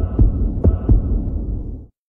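A loud, deep rumbling sound effect with four heavy low thumps at uneven intervals, cutting off suddenly near the end.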